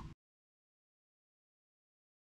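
Complete silence: the sound track cuts off just after the start.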